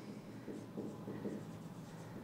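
Marker pen writing on a whiteboard: a run of faint, short strokes.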